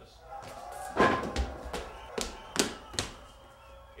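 A loud thud about a second in, then three sharp knocks about half a second apart, with brief voices around them.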